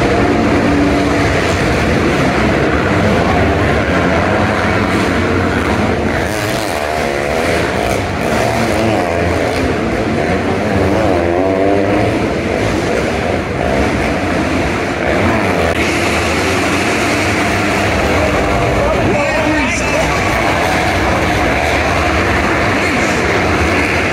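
Several dirt bike engines racing together, revving up and down as the riders go over the jumps and through the turns. A loudspeaker voice talks over them.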